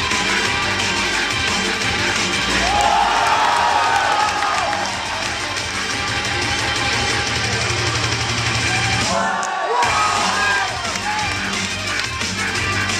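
Music with a steady bass beat accompanying a yo-yo freestyle routine, with the crowd cheering and whooping over it; the music drops out briefly about nine seconds in.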